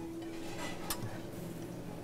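Quiet room sound with a faint held tone at the start and one sharp click about a second in.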